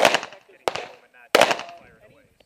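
Three handgun shots fired in quick succession, about two-thirds of a second apart, each sharp crack trailing off in a short echo.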